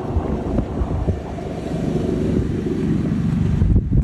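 Low, steady rumble of wind buffeting an outdoor microphone, with a faint hum underneath, growing a little louder toward the end.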